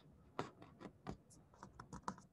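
Faint computer keyboard typing: a quick, irregular run of about eight key clicks.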